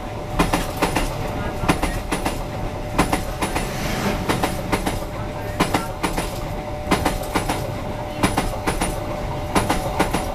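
Passenger train coaches passing close by at speed. The wheel sets clack over rail joints in quick pairs again and again, over a continuous rushing rumble with a steady tone underneath.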